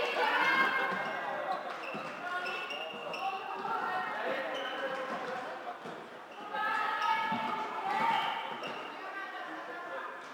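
Game noise in an echoing sports hall during a floorball match: players calling and shouting to each other, over knocks and squeaks from play on the court floor.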